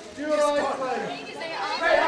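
Press photographers calling out over one another, several voices overlapping.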